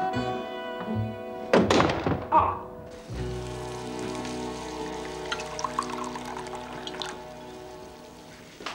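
Background music, with a burst of loud knocks and clatter about a second and a half in. From about three seconds a gas hob burner flares under a pan with a steady hiss and low rumble, with a few small ticks.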